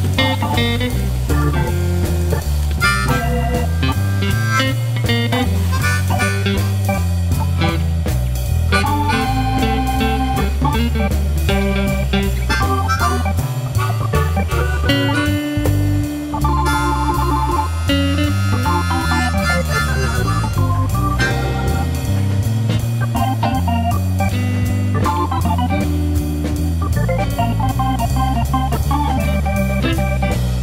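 Background music: an upbeat blues-style tune with organ and guitar over a steady bass line, playing throughout.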